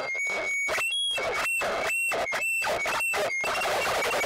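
Harsh-noise feedback from a ball-gag contact microphone running through effects pedals and an amplifier: a noisy wash with high, piercing feedback tones, chopped into short bursts by abrupt silences about twice a second.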